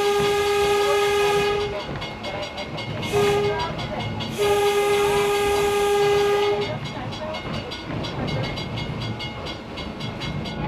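Electric interurban railcar's horn, heard from inside the car, sounding a single steady note in three blasts: a long one ending about two seconds in, a short one near three seconds, and another long one from about four and a half to nearly seven seconds. This is the close of the long-long-short-long signal for a road crossing. Under it the car's wheels rumble and click steadily on the rails.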